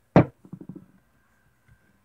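A single sharp thump just after the start, followed by a few faint light knocks, then near quiet.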